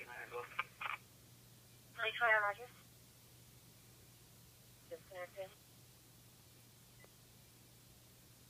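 Brief, clipped police radio voice transmissions of P25 digital audio played through a Whistler WS1080 scanner's speaker: three short bursts of narrow-band, telephone-like speech with pauses between, over a faint steady low hum.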